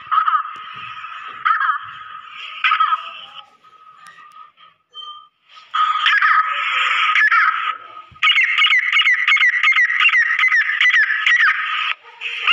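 Female grey francolin calling: harsh repeated calls about a second apart, a short lull, then from about eight seconds a fast run of notes, roughly three a second.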